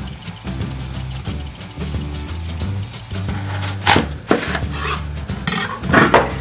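Background music with a steady low bass line. In the second half come about four sharp knocks of a kitchen knife on a plastic cutting board as an apple is cut in half.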